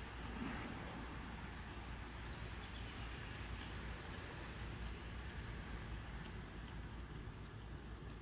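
Faint steady background noise with a low hum; no distinct sounds stand out.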